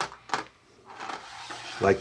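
Wooden game pieces clicking twice as a fishing ring knocks through them, then a soft scrape as the ring and a caught piece are dragged across the cardboard game board.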